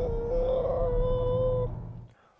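Car cabin rumble from a car on the move, with a long steady whine over it that stops near the end.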